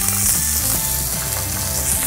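Chicken thighs frying skin-side down in a non-stick pan, a steady sizzle under background music.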